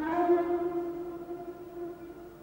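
Film soundtrack music: one long held note, sliding up slightly as it begins and fading away over about two seconds.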